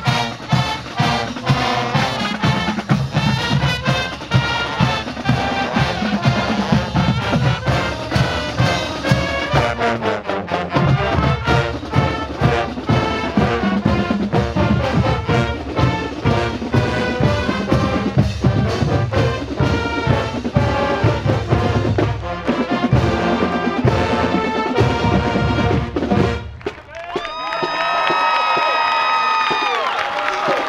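High school marching band playing a brass march with a steady drumline beat. The music breaks off about 26 seconds in, and after a short gap the band holds one sustained brass chord near the end.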